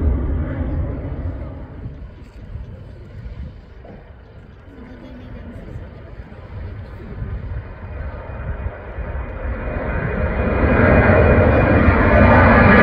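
Jet airliner noise fading away over the first few seconds as a departing aircraft climbs off. After a quieter lull, the CFM56 engines of a Boeing 737-800 at takeoff power grow steadily louder through the last few seconds as it rolls and lifts off.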